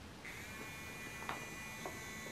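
Small DC hobby motor switching on about a quarter second in as its battery wire is taped into contact, then running with a faint steady whine. A couple of light clicks from handling the tape and wires.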